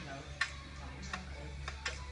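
A few light clicks, the sharpest about half a second in, over a low steady hum.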